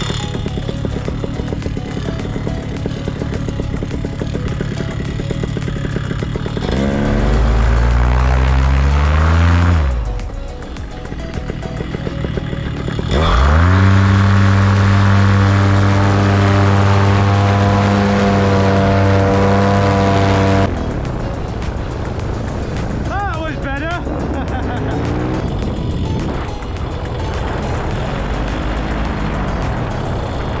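Paramotor engine and propeller running at low throttle, then revved up about seven seconds in. It drops back briefly, then holds at full power for about eight seconds for the takeoff run before being throttled back.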